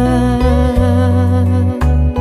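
Background music: a slow song in an instrumental passage between sung lines, with sustained tones over a bass line that changes note a few times.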